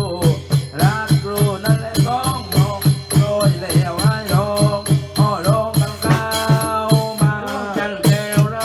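Nora ritual music: a drum struck with a stick at a quick, even beat of about three to four strokes a second, under a wavering, sliding melody that holds some long notes.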